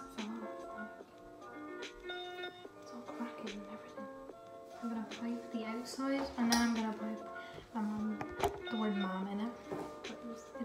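Background song with a singing voice over a steady accompaniment, and a sharp click about eight and a half seconds in.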